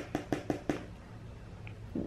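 A makeup brush tapping against a pressed-powder highlighter palette, a quick run of about six light taps in the first second, then quiet.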